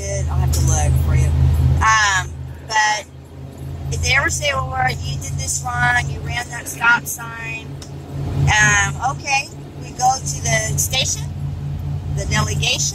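Voices talking inside a moving motorhome's cab, over the steady low drone of its engine and road noise while it drives along a highway.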